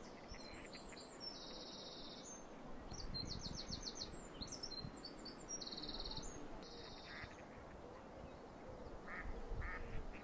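Faint outdoor birdsong: high, rapid trills and chirps for the first seven seconds or so, then a few short, lower calls near the end.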